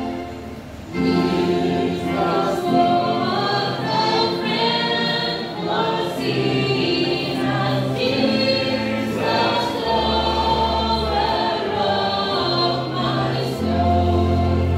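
A hymn sung by a group of voices, with one woman's voice leading through a microphone, accompanied by an electronic keyboard holding sustained chords and bass notes. The singing comes in about a second in after a short lull.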